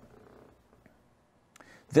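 A pause in a man's talk: faint room noise, with a soft breath shortly before his voice comes back at the very end.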